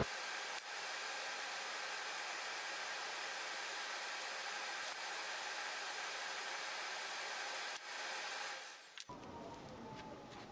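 A steady, even hiss with a few faint clicks, cutting off abruptly about nine seconds in.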